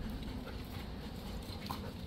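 Faint sounds of Labrador retrievers moving about on a bare dirt yard, with no barking.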